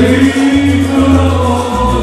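Salsa music played loud: sung vocals with a chorus over a bass line that changes note about every half second.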